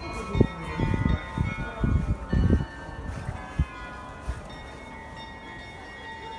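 Carillon bells of the Loreta bell tower ringing a melody, overlapping tones at several pitches that start one after another and hang on. Low rumbling thumps sound over the bells in the first three seconds.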